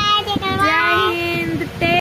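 A small child and a woman singing together in long, drawn-out notes.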